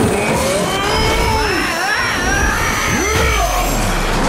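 Cartoon action sound effects: several swooping tones that rise and fall over a steady deep rumble, with a music score underneath.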